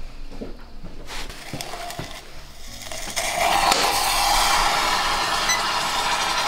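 Thermite reaction burning in a crucible: a loud, steady fizzing hiss that starts suddenly about three seconds in. It follows a few faint clicks and knocks.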